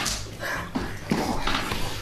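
A physical struggle heard through a police body camera: clothing rubbing against the microphone, with several short knocks and scuffling bursts.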